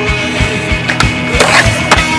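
Skateboard sounds, two sharp board clacks with a short scraping rush between them, over rock music with a fast steady drum beat.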